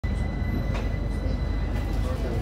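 Algiers Metro train heard from inside the carriage: a steady low rumble of the running train, with a thin, steady high whine.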